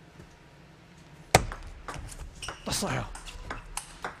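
Table tennis rally: a sharp crack of the celluloid-type ball off a racket about a second and a half in, then a quick run of lighter clicks as the ball strikes rackets and table.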